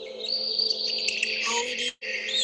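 Birdsong on a played relaxation track: high chirps and whistles over a steady low hum. The sound cuts out abruptly just before the end.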